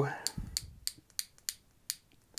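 Light, sharp clicks, about five at uneven gaps, from fingers handling a sixth-generation iPod nano, a small square aluminium player with a spring clip on the back.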